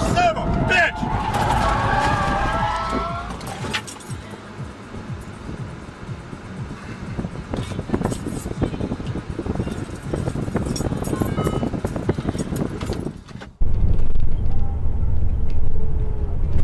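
Road and wind noise inside a moving car on a highway, with scattered knocks, after a wavering pitched sound in the first few seconds. About 13.5 seconds in it cuts to the much louder, steady low rumble of a semi-truck's cab on the freeway.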